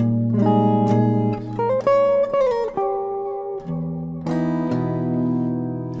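Clean electric guitar playing jazz chord voicings, starting on a B-flat minor voicing, the 2 chord of a 2-5-1 in A-flat major. Chords ring out, with a short run of single notes sliding between pitches in the middle and fresh chords struck a few seconds in.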